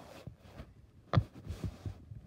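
Silicone pop-it fidget toy bubbles being pressed through: one sharp pop a little over a second in, followed by a few softer pops and taps.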